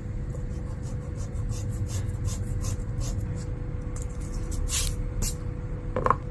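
Rubber eraser scrubbing back and forth on paper in short repeated strokes, with two stronger strokes near the end.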